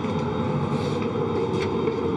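Steady, low-pitched rushing hum of the International Space Station's cabin air-circulation fans and equipment, with a couple of faint taps.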